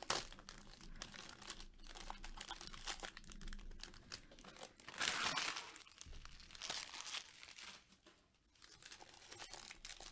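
Foil wrapper of a Bowman Draft Super Jumbo baseball card pack crinkling and tearing as it is pulled open by hand. The rustles are irregular, with a sharp rip at the start and louder crinkling bursts about five and seven seconds in.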